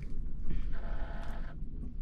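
A buzzing electrical tone of several stacked pitches, about a second long, from a light aircraft's cockpit as the master switch is turned on and the electrics power up, over a low steady hum.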